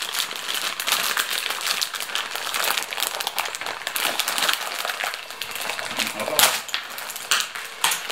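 Plastic pasta packet crinkling and rustling as it is pulled and worked open by hand, with a louder crackle about six and a half seconds in.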